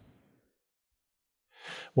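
Dead silence, then near the end a man's short breath in, just before his speech resumes.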